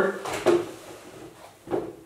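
A voice trails off, then a soft click about half a second in and a brief light knock near the end, handling sounds as a person moves to a whiteboard.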